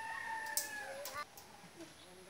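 A rooster crowing once: one long call that rises slightly, holds, then falls away and stops a little over a second in.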